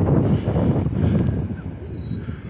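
Wind buffeting the microphone: a loud, fluttering low rumble. A couple of short, faint, high bird chirps come in near the end.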